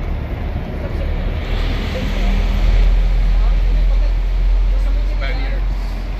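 City bus driving past close by over a steady low rumble of street traffic, its noise swelling about a second and a half in and easing off.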